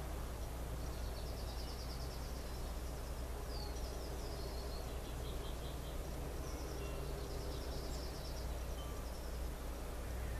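A steady low hum with faint bird trills and chirps in the background, one of them a short falling call a few seconds in.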